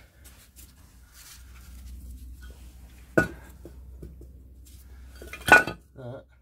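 Steel parts of a Land Rover Series transfer box clinking as they are handled: two sharp metallic knocks, one about three seconds in and a louder one near the end, with lighter ticks between.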